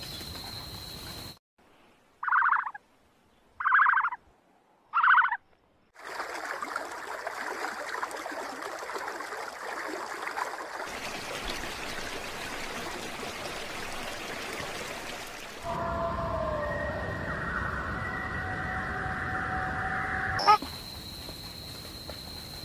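Wildlife field recordings spliced together: three short, loud animal calls about a second and a half apart, then a steady outdoor hiss of natural ambience, and later a louder stretch of steady tonal calls over it.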